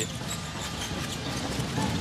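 Basketball being dribbled on a hardwood court, a run of bounces, over the steady noise of an arena crowd.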